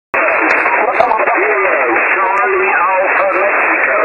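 Amateur radio single-sideband pile-up heard through a receiver: many stations calling at once on the same frequency, their voices overlapping into a dense, unbroken garble with a thin, telephone-like sound. It starts abruptly just after the start.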